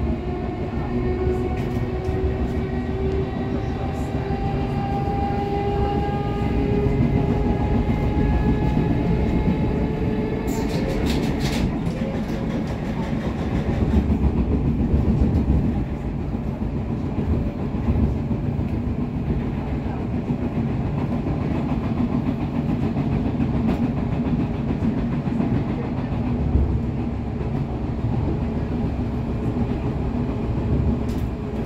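LEW MXA suburban electric multiple unit heard from inside the passenger car: a whine from its traction drive rises steadily in pitch as the train accelerates over the first ten seconds. A short run of clicks follows at about eleven seconds, then the train runs on with an even rumble of wheels on rail.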